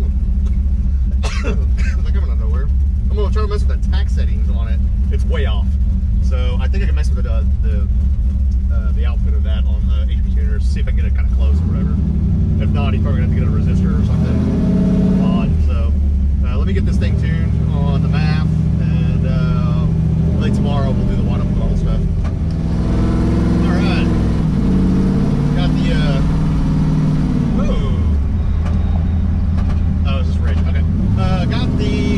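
Cammed 5.3 L LS V8 with a BTR Stage 4 truck cam, heard from inside the cab while driving. It holds a steady low note at first, then from about twelve seconds in it rises and falls several times as the truck accelerates and the automatic transmission shifts.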